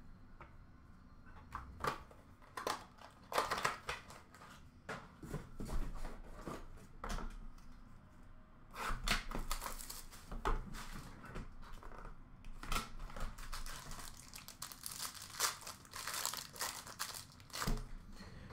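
Hockey card packs and boxes being torn open by hand, with the wrapper crinkling and cards shuffled and handled: an irregular run of short tearing and crackling noises, louder in a few spells.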